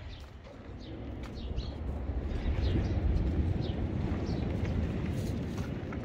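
Low rumbling outdoor noise, growing louder from about two seconds in, with faint short high chirps scattered through it.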